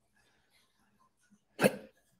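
Near silence, then about one and a half seconds in a single short, sharp throat noise from a man, like a hiccup or a cough.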